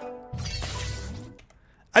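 Logo transition sting: a few ringing chime-like tones, then a noisy whoosh over a low rumble with one held tone, cutting off about a second and a half in.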